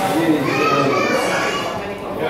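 Indistinct voices of adults and children talking and calling in an indoor swimming pool, with a high child's voice rising and falling about half a second in.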